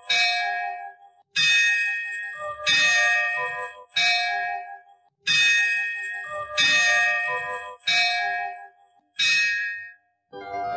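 A temple bell struck seven times at an even pace, about once every 1.3 seconds, each stroke ringing on and fading before the next.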